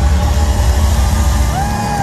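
A live soft-rock band plays loud through a concert hall PA with drums and cymbals, as a song comes to its end. A held note slides up and in about three-quarters of the way through.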